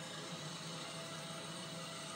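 Steady mechanical whirring from a powered armour suit, a TV sound effect heard through a television speaker and recorded off the set.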